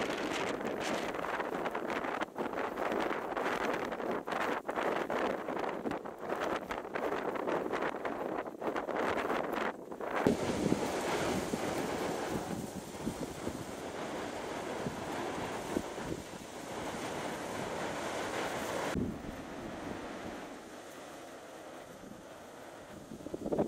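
Gusty storm wind buffeting the microphone over the sound of heavy surf breaking below the cliffs. About ten seconds in it changes to a steadier rushing of breaking waves with a few wind thumps, and it turns quieter near the end.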